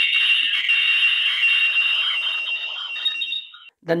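Loud, steady high-pitched squeal held for about three and a half seconds, then cutting off suddenly. It is acoustic feedback between the phone's two-way talk microphone and the outdoor security camera's speaker.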